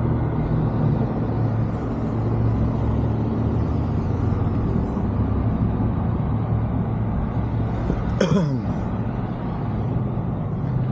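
Engine and road noise of a vehicle driving slowly, heard from inside the cab: a steady low hum and rumble. A brief falling vocal sound comes about eight seconds in.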